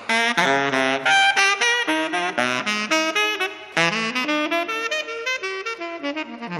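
Saxophone playing a jazz solo: a fast run of short notes stepping up and down in pitch, with a fresh loud attack about four seconds in.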